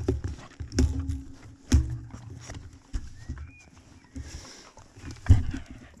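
Handling noise from a camera being moved about and gear being shifted: irregular dull knocks and rustles, with several heavier bumps in the first two seconds and another near the end.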